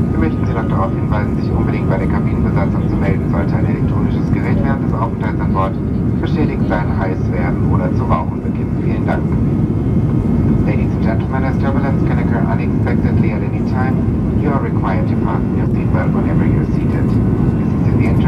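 Steady, loud cabin roar of an Airbus A320 climbing after takeoff: engine and airflow noise heard from a window seat. A cabin announcement voice over the PA runs through it.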